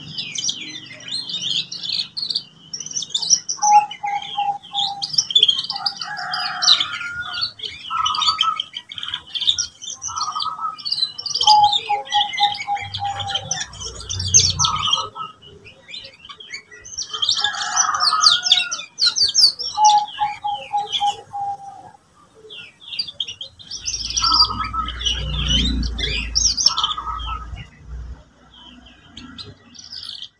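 Young domestic canary singing in long, varied phrases: rapid high chips and warbles mixed with low rolling trills, broken by short pauses. It is a young bird still learning to put its song together. A low rumble sits under the song about three-quarters of the way through.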